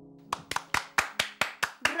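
The last notes of a piano die away, then two people clap their hands quickly and steadily, with a shout of "Bravo!" near the end.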